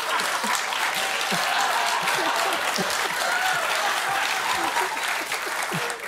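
Studio audience applauding with laughter mixed in, a dense, steady clatter of clapping that eases off near the end.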